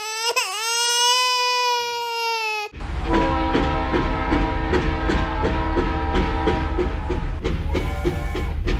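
A long, high crying wail in a cartoon voice, wobbling down near the start and then held. From about three seconds in, a toy steam train running: a steady rumble with rhythmic chugging about two beats a second under steady tones.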